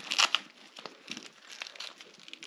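Plastic wrappers and a nylon first-aid pouch crinkling and rustling as the kit is handled and pushed into a backpack pocket, loudest about a quarter second in, then scattered small crackles.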